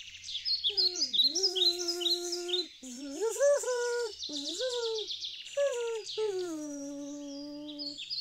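A voice humming a wandering tune in several long held notes that slide up and down, over a steady background of recorded birdsong chirping.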